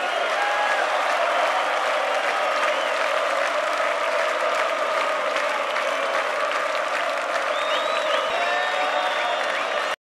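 Large concert audience applauding steadily at the end of the show, with crowd voices mixed in.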